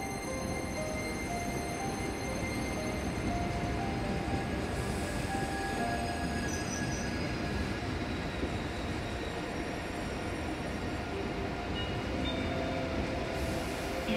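A train rolling on the track: a steady rumble of wheels on rails, rising a little over the first few seconds, with a few brief steady tones over it.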